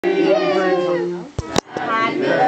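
People's voices at a party, with a drawn-out note that falls in pitch, and two sharp clicks about one and a half seconds in.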